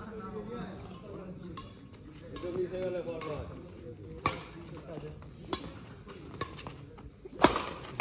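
Badminton rackets striking a shuttlecock in a doubles rally: sharp hits about once a second, about seven in all, the loudest near the end. Voices of onlookers are heard underneath.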